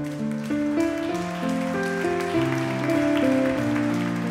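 Live band playing a slow instrumental introduction to the song: held chords and a slow melody line, the notes changing every half second to a second.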